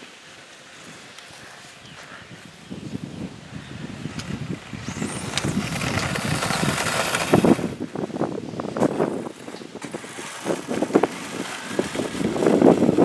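Radio-controlled drag car with a Velineon 3500kV brushless motor accelerating, its motor and gears whining and rising in pitch about five seconds in. Gusty wind buffets the microphone through the second half.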